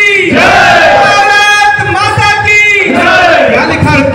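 A man shouting political slogans through a microphone and PA, with a crowd of men shouting them back. There are three long, drawn-out shouted phrases.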